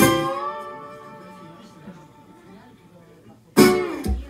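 Acoustic guitar in solo blues: a chord struck at the start rings out and slowly fades for about three seconds, then a sudden loud strum comes near the end.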